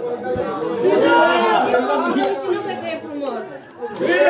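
Spectators' voices in the stands: men chattering over one another, with a brief lull near the end.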